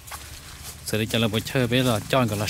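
A person talking, starting about a second in, over faint background noise.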